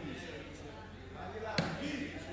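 A single sharp thump about one and a half seconds in, over faint, low voices.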